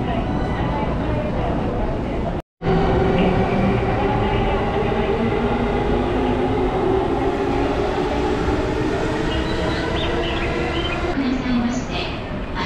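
Electric commuter train at a station platform, with a steady hum under the chatter and footsteps of a crowd. The sound drops out completely for a moment about two and a half seconds in.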